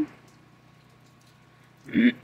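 Faint outdoor background with a low steady hum, and a person clearing their throat near the end.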